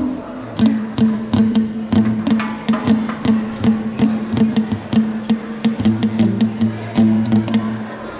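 Band soundcheck: hand percussion playing a quick run of sharp hits, several a second, over a steady held low note, with a deeper note joining about six seconds in. This is the check of the percussion mics.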